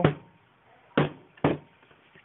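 Two short, dull knocks about half a second apart: the foam-and-cardboard prop hatchet being tapped or knocked.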